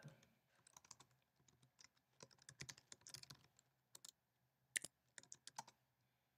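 Faint typing on a computer keyboard: a quick run of keystrokes in the first few seconds, then a few separate presses near the end.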